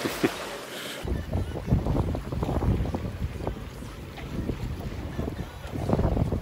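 Wind gusting on the microphone aboard a moving sailboat, with water rushing past the hull. The uneven low rumble of the wind starts about a second in and stays loud throughout.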